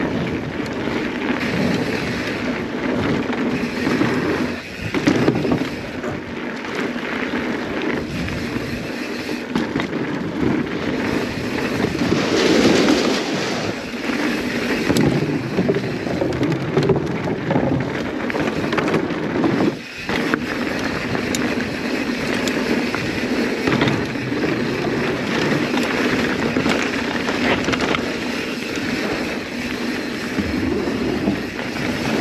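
Continuous rushing noise of a mountain bike being ridden fast downhill: tyres rolling over gravel and wooden boardwalk, mixed with wind on the microphone. It is briefly louder and brighter for a couple of seconds near the middle.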